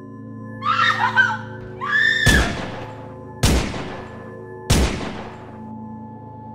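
Two short, high-pitched screams, then three loud, sharp hits about a second and a quarter apart, each ringing out, over a steady droning horror-film score.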